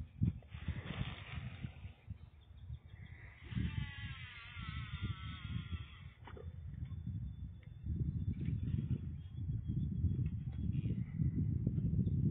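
Gusting, rumbling wind noise on the microphone at a river bank, stronger in the second half. An animal call, a warbling trill, sounds from about three to six seconds in, and a single sharp click comes just after it.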